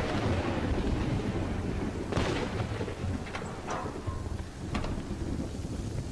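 A large vehicle running, heard from inside its cab: a dense, steady low rumble with a few sharp clicks and rattles over it.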